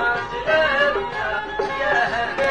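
Constantinois malouf music from a nouba in the Raml Maya mode: a highly ornamented melody line with violin over ensemble accompaniment, playing without a break.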